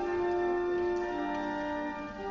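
Church organ playing slow, sustained chords, the held notes shifting about halfway through.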